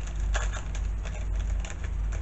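Irregular light clicks and rustles of hands handling a small card of pin-back badges, over a steady low hum.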